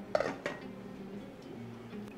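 A few light clinks and knocks of kitchenware in the first half-second as a glass pot lid is handled over the stove, then a faint low steady hum.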